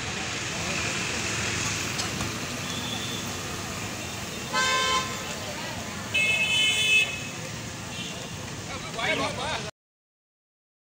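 Busy street ambience with voices. A vehicle horn honks twice: a short honk about four and a half seconds in, and a longer one about six seconds in.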